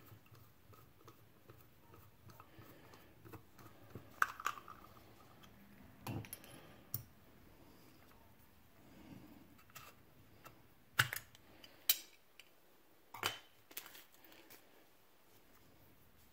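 Scattered light clicks and clinks of a Zebco 733 spincast reel being taken apart by hand: the handle coming off, then the reel body opened. The sharpest few clicks come in the second half.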